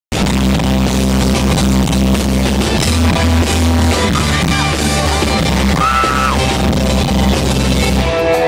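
Live rock band playing loudly through a concert PA, heard from the audience with heavy, steady low bass. A high voice glides above the music about four seconds in and again around six seconds.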